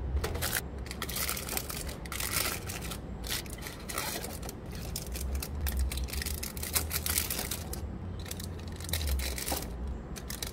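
Plastic fruit-snack pouches crinkling and crackling as they are handled and pushed one by one into a vending machine's spiral coil, in irregular bursts, over a low hum.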